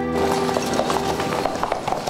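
Horse hooves clip-clopping in irregular strikes over a busy noisy background, with the last held notes of a soft keyboard music cue dying away in the first half second.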